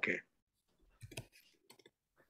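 A spoken "okay" right at the start, then near silence broken by a few faint clicks between about one and two seconds in.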